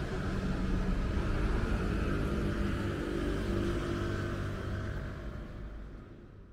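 Outdoor city ambience dominated by a steady low rumble of car traffic on a nearby road, fading out near the end.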